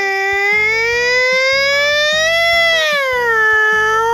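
A woman imitating a fire truck siren with her voice: one long wail that rises slowly to a peak, falls, and begins to rise again near the end. Light background music with a steady beat runs underneath.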